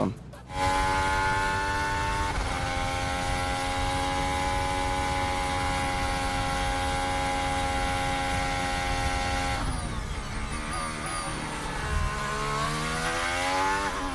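Onboard recording of a Formula 1 car's turbo-hybrid V6 held flat out at high revs, its note steady with a small step down about two seconds in, which a driver took for super-clipping. About ten seconds in the revs drop through downshifts, then climb again as the car accelerates out of the corner.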